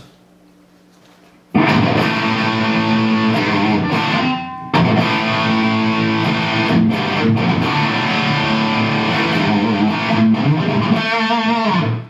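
Electric guitar played through a Rocktron Piranha all-tube preamp on its "classic" distortion setting, fully cranked: heavily distorted rock riffing. It starts after about a second and a half of low amp hum, breaks briefly about four and a half seconds in, and ends on a held note with vibrato.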